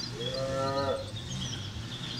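A cow mooing once: a single level call lasting just under a second, with birds chirping faintly behind it.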